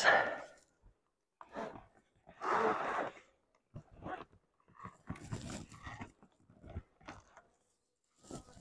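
Scattered scraping and handling noises, in short irregular bursts, as a corrugated plastic nuc box is shifted on a hive's lid.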